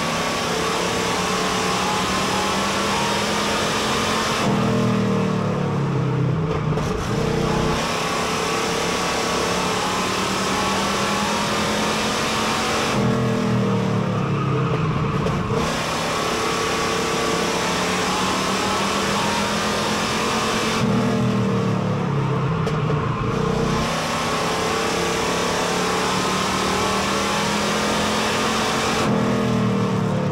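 Street stock race car engine heard from inside the cockpit at racing speed. The revs climb steadily, then the throttle lifts off and the pitch falls, a cycle that repeats about every eight seconds, four times: full throttle down the straights and lifting for the turns of a short oval.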